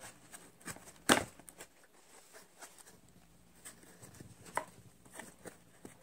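Hands opening and handling a small cardboard toy box: scattered light taps and clicks, with one sharp knock about a second in.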